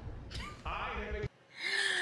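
Cartoon dialogue that cuts off about a second in, then a woman's voiced, drawn-out 'oh' of mock surprise.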